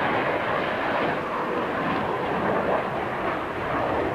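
A CF-101B Voodoo's twin Pratt & Whitney J57 afterburning turbojets in a fly-by, a steady rushing jet noise that holds level throughout.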